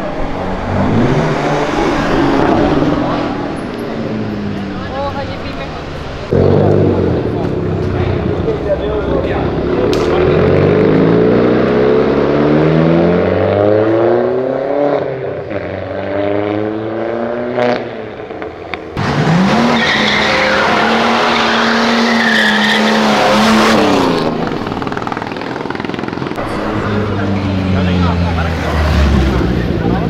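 Car engines revving hard as cars pull away one after another, each engine note climbing as it accelerates. From about 19 to 24 s an engine holds high revs under a loud, steady squeal of spinning tyres.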